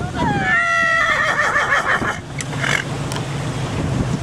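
A horse whinnying once: a call of about two seconds that starts high, slides down in pitch, then ends in a shaky quaver.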